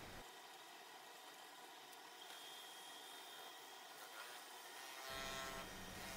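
Near silence: only a faint hiss.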